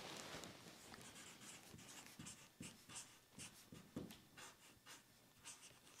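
Dry-erase marker writing on a whiteboard: a series of short, faint, irregular strokes as a word is written out.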